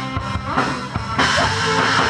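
Live rock band playing, with drum kit, bass and electric guitar, and a cymbal crash a little over a second in.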